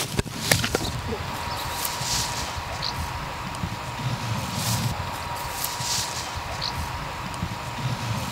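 Pruning shears snipping through a green garden hose: a few sharp snips within the first second. Then a steady low outdoor rumble with occasional soft rustling.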